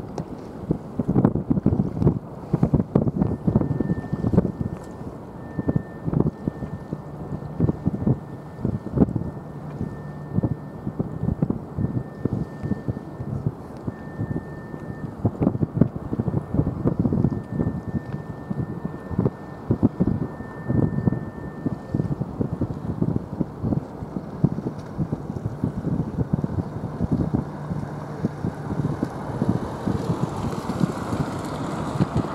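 Gusty wind buffeting the microphone in irregular low blasts. A faint, high steady tone sounds on and off through the first two thirds.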